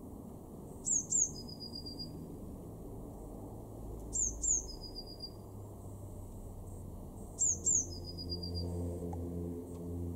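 Blue tit singing its song three times, about three seconds apart: two thin, high, falling notes followed by a lower, even trill.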